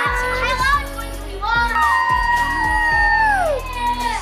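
Music playing from the television under a family's excited voices and children's shouts. A child's long, high shout is held for about two seconds and falls away in pitch near the end.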